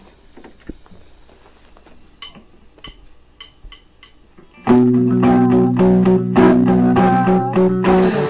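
A few light clicks, then about two-thirds of the way in a rock band comes in loudly together: electric guitar chords over bass guitar and drums, held steady.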